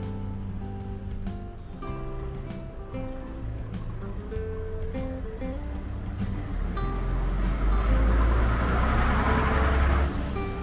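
Background guitar music. From about seven seconds in, a bus drives past close by, its low engine rumble and running noise swelling to the loudest point near the end.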